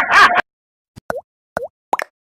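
Short cartoon-style pop sound effects on an animated logo: three quick pops, about a second in, a little after one and a half seconds, and near the end, each a brief tone that dips and rises again. Just before them, a man's voice cuts off abruptly.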